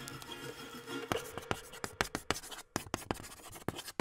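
Wood fire crackling, with irregular sharp pops and snaps that grow more frequent after about a second. The tail of fading music is still faintly heard in the first second.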